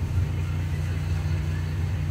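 A steady low electrical hum with faint hiss: the background hum that runs under the whole of an old, worn video recording.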